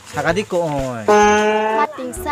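A mooing call: a falling note followed by a long, steady, level moo of under a second that cuts off abruptly.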